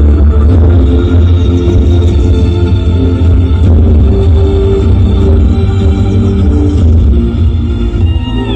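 Loud music with a very heavy bass, played over a large carnival street sound system (a "sound horeg" rig).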